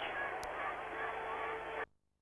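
Steady background noise of an outdoor skating rink on an old broadcast soundtrack, with faint distant voices and a single click about half a second in. It cuts off abruptly shortly before the end.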